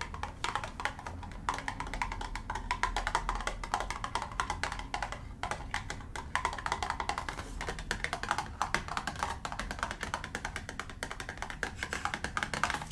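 Fingernails tapping and scratching on a small cardboard gauze box: a dense, rapid run of light clicks and taps. The box's top flaps are opened during the later part of the run.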